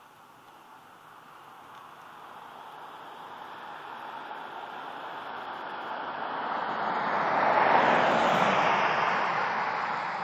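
Fighter jet flying over, its engine noise a steady rushing sound that grows louder, is loudest about eight seconds in as it passes, then starts to fade.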